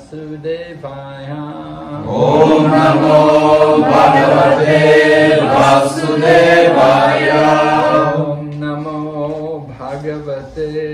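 Devotional call-and-response chanting: one voice sings a line, then a group of voices answers much louder for about six seconds, and the single voice leads again near the end.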